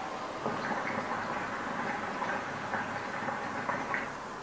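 Hookah bubbling steadily as a long draw is pulled through the hose, the smoke gurgling through the water in the base with a dense, irregular crackle.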